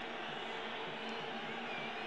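Faint, steady stadium background noise from a football match broadcast: an even hum of crowd and ground ambience with no distinct cheers, whistles or impacts.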